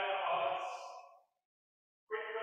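A man's voice intoning a long held phrase at a steady pitch, fading away a little over a second in, then cut to dead silence by the stream's audio gate.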